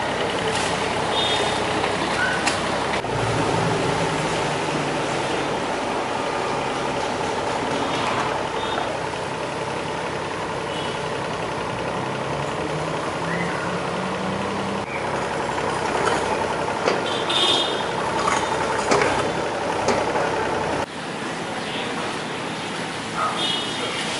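Kobelco mini excavator's diesel engine running steadily, its note rising for a few seconds at a time as the hydraulics take load while the arm digs. Scattered sharp knocks of the bucket and spoil are heard along with it.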